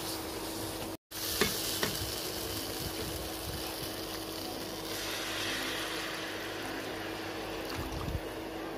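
Thick onion-tomato masala sizzling in a kadai while it is stirred with a steel spoon, with a few light scrapes and clicks of the spoon on the pan early on. The masala is being cooked down until its water evaporates. The sound cuts out for an instant about a second in.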